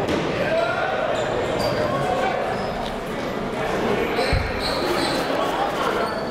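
Basketballs bouncing on a hardwood gym floor during warm-ups, with one heavier thump about four and a half seconds in. Behind them is the steady murmur of many voices echoing in a large gymnasium.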